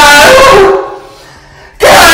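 A loud, distorted vocal wail held on a wavering pitch, fading out about a second in; after a short lull another loud wail cuts in abruptly near the end.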